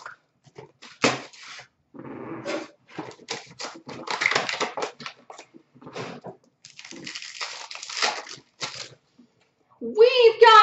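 Trading card packs being opened and the cards handled: irregular bursts of wrapper crinkling and rustling, with short taps of cards against one another.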